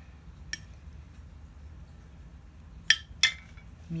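A kitchen utensil clinking against a dish while salsa is served onto tostadas: one faint clink about half a second in, then two sharp clinks close together near the end.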